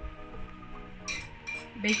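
Background music with a few light clinks of a metal spoon against a small ceramic bowl as baking powder is scooped out, about a second in.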